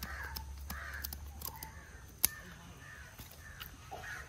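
A crow cawing in a series of short calls, about two a second, fading toward the end. Under it come thin scraping clicks of a knife scaling a tilapia, and one sharp click a little after two seconds is the loudest sound.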